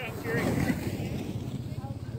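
Wind buffeting the microphone, with a low rumble that pulses quickly and evenly, and a brief louder swell of rushing noise in the first second.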